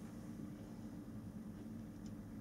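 Quiet room tone: a steady low hum with faint hiss and no distinct event.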